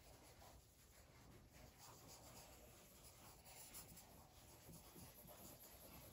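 Faint scratching of a pencil sketching on paper, in short strokes.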